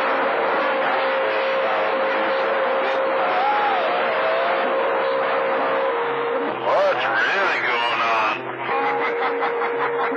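CB radio receiving distant skip on channel 28: a steady hiss of static with a continuous whistling heterodyne tone, and garbled, distorted voices breaking through, strongest from about six and a half to eight and a half seconds in.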